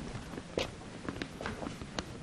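A few light clicks and knocks from a microphone stand being gripped and raised by hand, picked up through the microphone.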